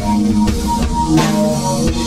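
A music track with a drum beat and held pitched notes from guitar-like instruments, with no singing.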